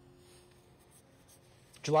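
Near silence with faint room tone and a faint steady tone that fades in the first second, then a man's voice starts speaking just before the end.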